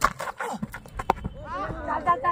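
A cricket bowler's run-up footsteps thudding on dry ground close to the microphone, followed by several voices calling out as he reaches the crease.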